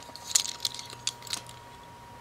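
A few faint clicks and rustles in the first second and a half, from fingers handling a Hot Wheels Carbonator toy car with a transparent plastic body and metal base, close to the microphone; after that only a low steady hum.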